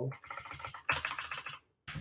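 Fast typing on a computer keyboard: a quick run of key clicks lasting over a second, then a short pause.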